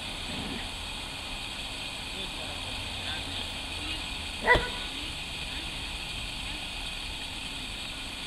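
Belgian Malinois giving a single loud, sharp bark about four and a half seconds in, over steady outdoor background noise.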